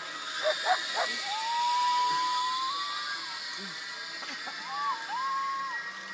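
Zip-line trolley running down the steel cable: a high hiss that swells over the first two seconds, then eases as the rider slides away. Long, steady high tones sound over it, one lasting about two seconds early on and a shorter pair near the end.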